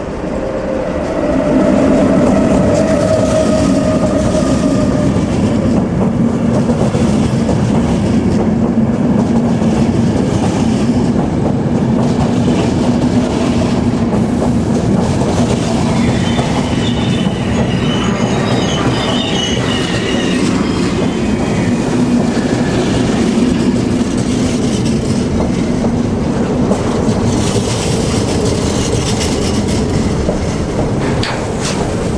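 ÖBB electric locomotive hauling a car-train of passenger coaches and car-carrier wagons rolling past along a platform: a steady rumble of wheels on rail. A slightly falling whine is heard as the locomotive passes in the first few seconds, and high squeals from the wheels come about halfway through.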